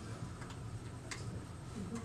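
Quiet room tone: a steady low hum with a few faint, irregular clicks, the clearest about a second in.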